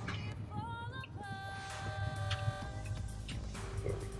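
Background electronic music: a synthesizer melody of held notes that steps up in pitch about half a second in.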